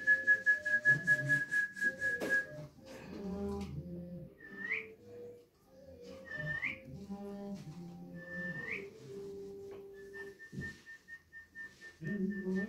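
Mukkuri, a string-pulled jaw harp, being played: a low drone with whistle-like overtones that change as the mouth shapes them. Quick rhythmic string pulls carry a high held overtone through the first two seconds or so. Three short rising overtone glides follow about two seconds apart, and the high held overtone returns near the end.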